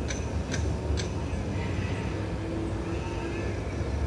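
Steady low background rumble, with a few faint clicks in the first second and a brief faint hum about three seconds in.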